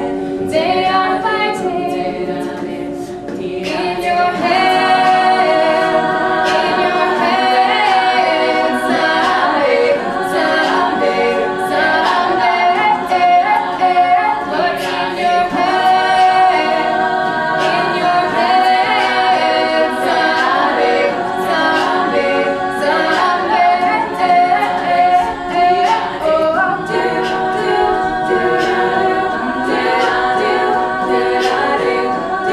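Women's a cappella group singing in close harmony, several sustained voice parts moving together, with a fuller chord entering about four seconds in.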